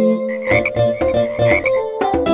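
Instrumental break of a bouncy children's song: a keyboard tune on a steady beat, with cartoon frog croaks woven in.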